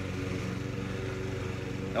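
Steady low hum of a small engine or motor running in the background, holding one even pitch.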